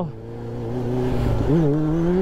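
Sport motorcycle engine heard from the rider's seat: the engine note drops and quiets at the start, holds low, then about one and a half seconds in jumps up and climbs steadily as the throttle is opened hard for a wheelie.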